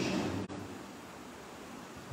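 Steady, even background hiss of the room, with a voice trailing off in the first half second and the sound briefly cutting out about half a second in.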